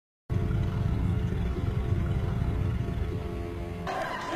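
A low, steady rumble from a film soundtrack, starting abruptly after a short silence.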